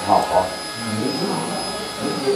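Men talking in low conversational voices, over a steady background hum with a faint high whine.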